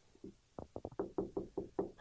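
A dry-erase marker tip clicking against a whiteboard as lines and letters are drawn: about a dozen short, faint ticks over a second and a half.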